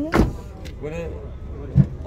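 A Chevrolet Spark's front door is swung shut by hand and closes with a single solid slam just after the start. A second, duller thump follows near the end.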